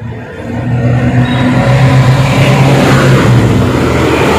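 Road traffic passing close by: cars and a minibus driving past, a steady engine hum with road noise. It grows louder over the first second, then stays loud.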